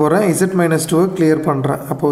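Only speech: a man talking steadily, with no other sound standing out.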